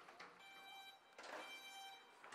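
Near silence, with only faint traces of sound.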